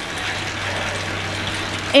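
Steady whooshing noise with a low, even hum from a bike spinning hard on an indoor trainer.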